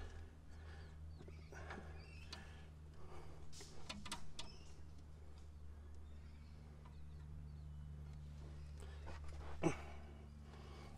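Faint light ticks and taps of hands working a brake hose fitting as it is threaded finger tight, over a steady low hum, with one sharper tap near the end.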